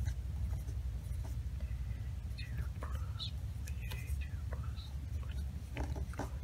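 A mechanical pencil scratching on paper in short strokes as a line of symbols is written, over a steady low hum.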